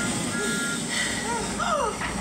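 Animated-film soundtrack played from a TV: a steady rush of noise under two short steady beeping tones near the start, then gliding, voice-like cries in the second half.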